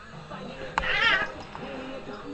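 A house cat yowls once in a fight, a short wavering screech of about half a second a little under a second in, just after a sharp knock.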